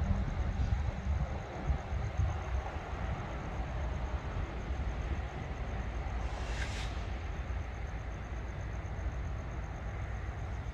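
Steady low rumble from a Florida East Coast Railway freight train of hopper cars in the yard, with a short hiss about six and a half seconds in.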